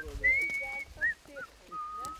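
Clear whistling: one long steady high note, then a few short rising-and-falling chirps, and a lower steady note near the end.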